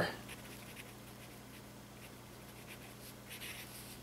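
Marker pen writing on paper: faint strokes in two spells, about half a second in and again around three seconds in.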